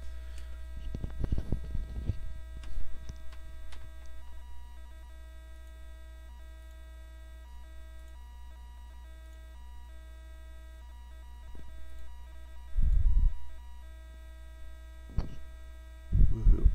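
Steady electrical mains hum on the recording, with thin steady tones above it. There are a few light handling clicks and rustles in the first seconds and a short low thump about thirteen seconds in.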